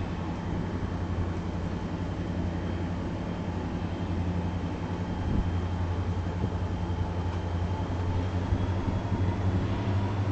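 Diesel-hauled freight train rolling past, with a steady low engine drone over the continuous rolling noise of the train.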